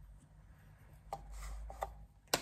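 Quiet room with two small clicks, about a second in and near the end, and a short sniff between them as coffee in a glass server is smelled.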